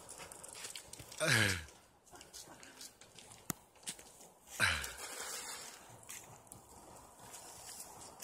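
A man whooping twice during a ride on a tree swing, each whoop a short yell that falls in pitch, about a second in and again just before five seconds in. A single sharp click comes between them.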